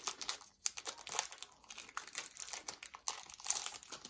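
Foil-lined wrapper of a Pokémon trading card booster pack crinkling and crackling as it is worked open and handled, in a quick, irregular run of crackles.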